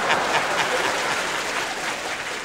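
Studio audience applauding, a dense steady clapping that eases off slightly toward the end.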